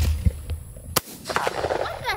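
A single shotgun shot fired at a thrown clay target at the very start: a sharp blast with a short low boom trailing after it. A brief sharp click follows about a second later.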